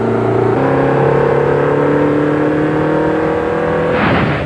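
Car engine pulling steadily under acceleration, its pitch climbing slowly over several seconds, with a change in tone about half a second in.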